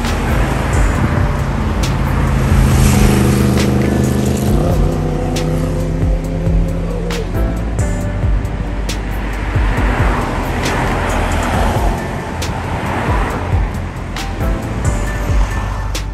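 Background music over road traffic, with cars and a van passing close by in swells of tyre and engine noise.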